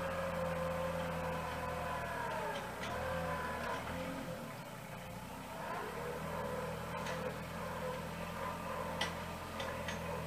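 Farmtrac compact tractor's diesel engine running while its front-end loader pushes up dirt for a terrace. The engine note drops about four seconds in and comes back up about two seconds later. A few sharp ticks sound near the end.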